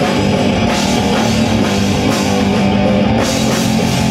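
Live rock band playing loud, with electric guitars over a driving drum kit.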